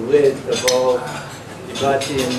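A man's voice in short broken sounds, with one sharp clink about two-thirds of a second in.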